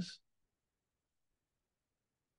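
Near silence: a meditation guide's spoken word trails off in the first moment, then the track is all but empty.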